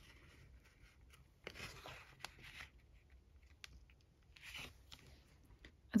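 Faint handling of paper: a few soft rustles and light taps as a paper journal page is lifted, turned and pressed flat.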